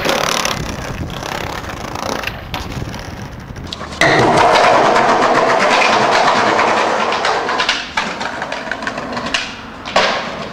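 Skateboard wheels rolling over concrete. About four seconds in the rolling becomes suddenly louder and fuller, then gives way to a few sharp clicks of the board's tail and wheels near the end.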